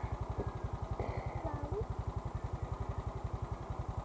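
Motorcycle engine idling at a standstill with a steady, even low pulsing.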